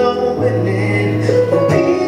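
Live soul band playing a song on keyboard, bass and drums, with a low bass note held for about a second in the middle.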